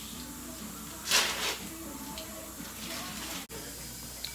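A short hiss, about half a second long, about a second in, over faint voices in the background. The sound cuts out for an instant near the end.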